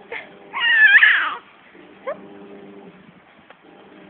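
A five-month-old baby's high-pitched squeal of delight about half a second in, lasting about a second, with a short rising coo before it and another about two seconds in.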